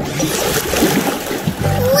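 Water pouring and splashing, a sound effect for a stream of water tipped out of a toy digger's bucket onto the ground.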